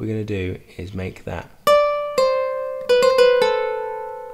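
Kora (21-string West African harp) plucked. A single note comes about one and a half seconds in and another half a second later, then a quick run of four notes near the three-second mark, all left to ring out and fade slowly.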